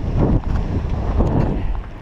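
Wind buffeting the camera microphone on a moving bicycle: a loud, uneven low rumble.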